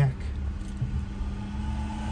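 Steady low rumble of a car being driven, heard from inside the cabin: engine and road noise with a faint steady hum.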